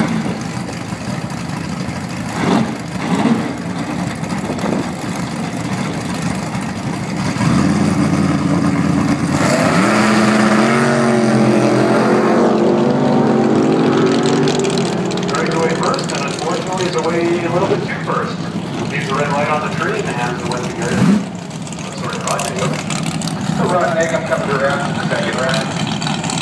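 Drag cars, a Chevy Nova among them, launching off the start line about seven to nine seconds in: a loud engine run whose pitch climbs repeatedly as they pull away, fading after about fourteen seconds. Engines idle before the launch.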